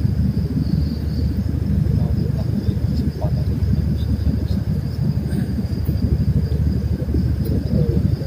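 A steady high drone of night insects over a loud, continuous low rumble.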